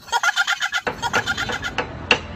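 Poultry calling: a rapid run of short notes, about eight to ten a second, louder in the first half and weakening toward the end.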